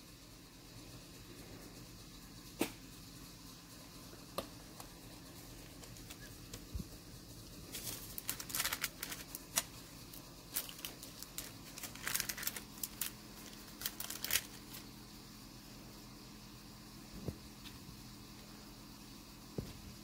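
Faint handling sounds: scattered light clicks and paper crinkling, bunched in the middle, as a metal teardrop cutter is worked through a sheet of polymer clay on paper and the clay is peeled away.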